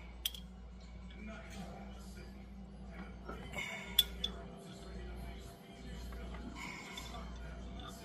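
A metal spoon clinking against the inside of a glass jar as pesto is scooped out, a few light clinks with the sharpest about four seconds in, over a steady low hum.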